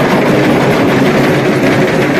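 Dhak, the large barrel drums of a Durga Puja procession, beaten with sticks in a fast, continuous, loud rhythm.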